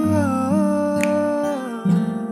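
A man humming a wordless melody with closed lips, holding notes and gliding smoothly between them, over chords ringing from a Taylor 324e acoustic guitar.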